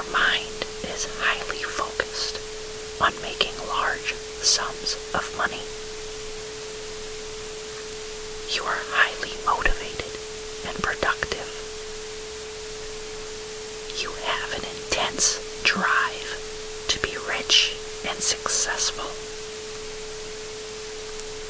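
Whispered affirmation phrases in three runs, over a steady tone near 432 Hz and a constant hiss of noise.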